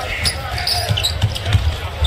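Basketball dribbled on a hardwood court, a string of low thumps, with sneakers squeaking as players run the floor.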